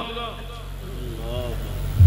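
A pause in amplified speech: the echo of the last words dies away over a steady low hum, and a faint voice is heard briefly about a second and a half in. The low hum grows louder near the end.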